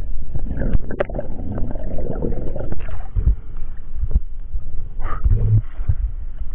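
Underwater sound picked up by an action camera's housing as a spearfisher swims up towards the surface: a steady low rumble of moving water, with scattered clicks and knocks. A short rushing burst comes about five seconds in, as the camera nears the surface.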